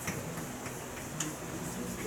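Chalk on a blackboard while characters are written: a few sharp taps about half a second apart, with light scratching between them.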